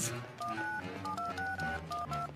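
Mobile phone keypad tones: a quick run of about seven short two-note beeps as the keys are pressed.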